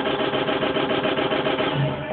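Track audio from Traktor DJ software played over speakers, chopped into a raspy, buzzing stutter that repeats about a dozen times a second over a held tone.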